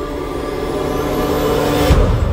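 Spooky intro music sting with sustained dark tones under a swelling noise riser and a faint rising whistle. It builds to a low boom near the end.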